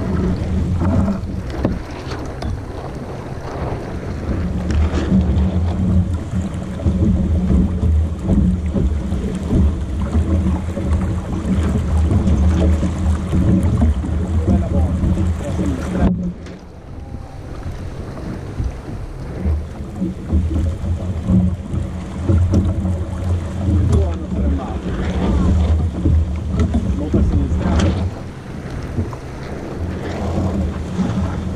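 Wind buffeting the camera's microphone in a heavy low rumble, with water rushing along the hull of a sailboat under way; the wind drops briefly about sixteen seconds in.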